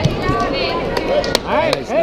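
A few sharp, irregular claps or slaps over spectators' shouting voices, the voices growing louder in the second half.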